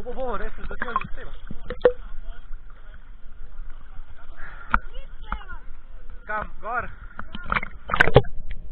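Children's voices calling out over water, with sharp splashes and slaps of water against a camera at the water's surface as a stand-up paddleboard is paddled.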